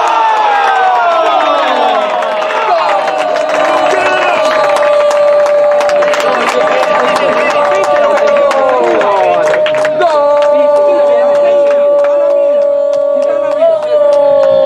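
A football commentator's long drawn-out goal cry, held on one high note for several seconds, breaking off briefly about nine seconds in and taken up again, over crowd cheering.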